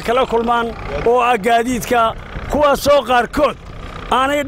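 Speech: a man talking into a handheld interview microphone, in short phrases with brief pauses.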